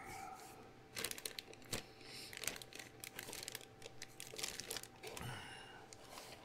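Clear plastic bags of model-kit sprues crinkling and crackling as they are lifted and shifted in the box, with a couple of sharper clicks about one and nearly two seconds in.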